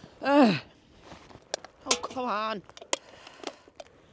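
Wordless human vocal sounds: a short falling groan near the start and a longer wavering 'oh' around two seconds in, over scattered sharp clicks and knocks of gear being handled as a backpack is taken off and set down on the ground.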